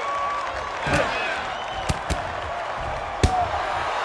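Boxing-glove punches landing with sharp thuds over a steady arena crowd noise with scattered shouts. There are four hits: one about a second in, two in quick succession near the middle, and the loudest just after three seconds.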